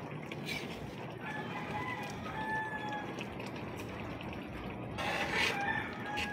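Pan of patola and misua soup simmering with a steady hiss. Over it a bird calls: a drawn-out call a little over a second in, and a louder, shorter one near the end.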